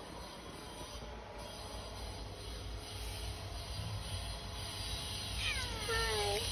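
Low steady rumble, then near the end a domestic cat meows once, a call that slides down in pitch. The cat is asking for food at the door.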